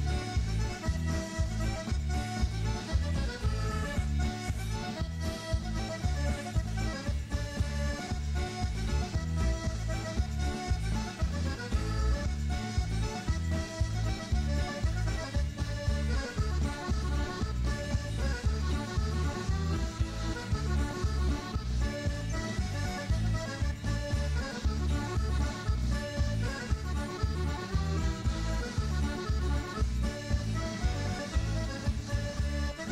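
Accordion tune played over a steady beat, a recorded piece of music heard over the radio.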